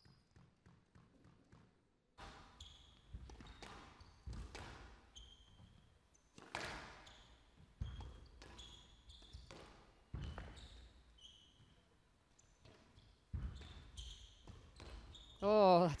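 A squash rally: the hard rubber ball cracks off racquets and the front and side walls about once a second or so, with sharp rubber-sole squeaks on the wooden court floor between shots, in a large echoing hall. Faint light ticks of the ball being bounced come before the first serve, and a loud wavering voice cuts in near the end as the rally finishes.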